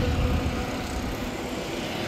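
Road traffic going past: a steady drone of vehicle noise that slowly fades.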